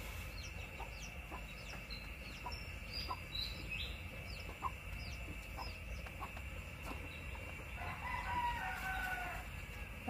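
A rooster crows once near the end, one drawn-out call of about a second and a half, over small birds chirping.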